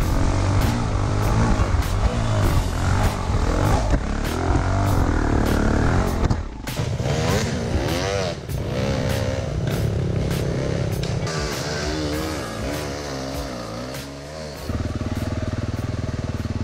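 Enduro dirt bike engine revving up and down while riding a forest trail. A music track with a steady beat plays over it.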